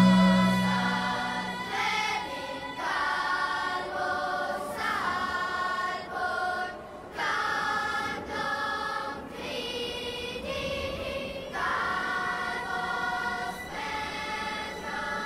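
Choir singing long held chords that change every second or two, as the song's outro. A loud low held note fades out in the first second or so.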